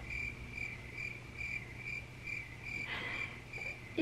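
Cricket-chirping sound effect: a faint, even run of short high chirps, about two to three a second, the stock gag for an awkward silence after a question goes unanswered.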